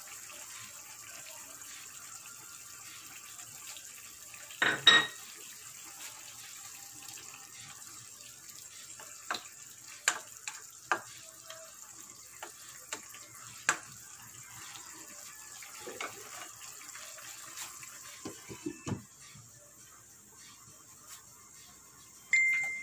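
Pork simmering in sauce in a wok, a steady bubbling hiss, while a ladle stirs it and clicks and scrapes against the pan, with one louder knock about five seconds in. Near the end a few low knocks come and the hiss falls away as a glass lid goes on the wok.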